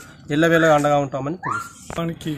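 A man speaking Telugu into a close microphone.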